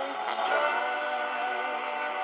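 CC Radio Plus AM receiver tuned to 1130 kHz, playing music from a weak, distant 1,000-watt station through its speaker. The music is a steady held chord with a narrow, AM-radio sound, and it comes through clearly with no fading: a sign of the radio's sensitivity.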